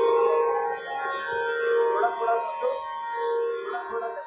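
Hindustani classical vocal music in Raga Kedar: singing over a steady, unchanging drone, with a few tabla strokes. It drops in loudness about a second in.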